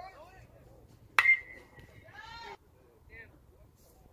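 A metal baseball bat hitting a pitched ball: one sharp ping that rings on for about a second. A spectator's shout rises over the end of the ring.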